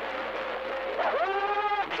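CB radio receiver audio: steady static hiss, then about a second in one drawn-out pitched call that swoops up at its start and holds for almost a second before cutting off abruptly with a click as the transmission drops.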